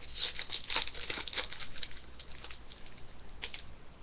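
Foil wrapper of a hockey card pack being torn open and crinkled by hand: a dense run of crackles over the first two seconds, thinning out after, with one last crinkle near the end.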